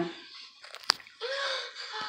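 A handheld phone being moved and handled: a few soft clicks, then one sharp click about a second in. A short pitched voice sound follows in the last second.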